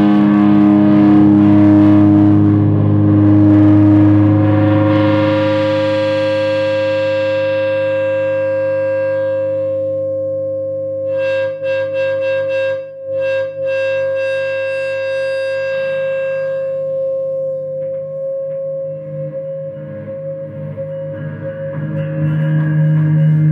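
Electric guitar feedback: a loud drone of several steady held tones that slowly fades. About halfway through, the upper tones stutter on and off for a few seconds.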